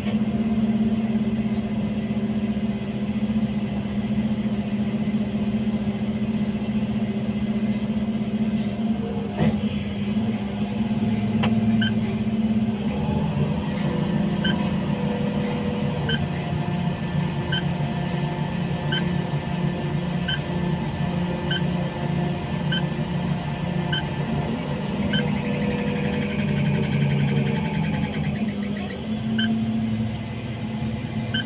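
Heavy machine's diesel engine running steadily, its pitch shifting about 13 seconds in as it takes up load. A short high warning beep repeats about once a second through the second half.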